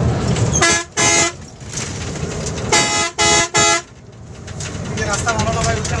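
Bus horn honking five short blasts: two about a second in, then three about three seconds in. Between and under them runs the steady low rumble of the moving bus's engine and tyres on the road.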